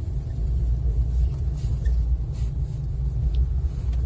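A car driving slowly: a steady low rumble of engine and tyres.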